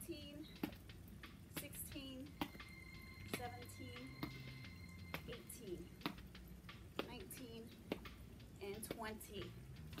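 A woman counting out exercise reps in short, quiet words, with scattered light clicks and taps between them. A faint steady high tone sounds for a few seconds around the middle.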